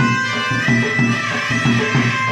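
Folk dance music: a two-headed barrel drum (dhol) played by hand in a quick, steady rhythm of about four strokes a second, under a reed wind instrument holding and bending a high melody.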